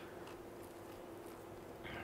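Faint, steady room tone with a low, constant hum and no distinct event.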